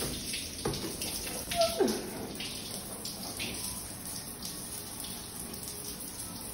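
Hotel shower running: a steady hiss of spraying water just after the chrome mixer valve is turned on, with a couple of clicks in the first two seconds.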